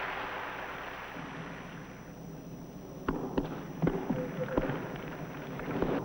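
Crowd noise dying away, then a tennis rally: the ball struck by rackets and bouncing on the court, a series of sharp knocks about half a second to a second apart starting about three seconds in.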